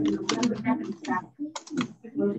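Computer keyboard typing in two short bursts, about half a second in and again about a second and a half in, with a voice talking faintly over a video call.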